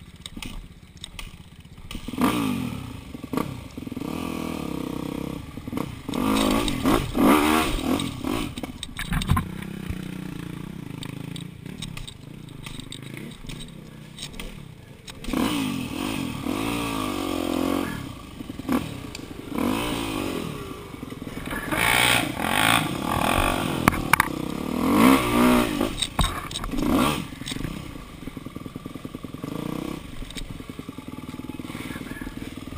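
Yamaha dirt bike engine heard up close from the rider's position, low for about two seconds, then revved in repeated rising and falling bursts of throttle as it is ridden over rough trail.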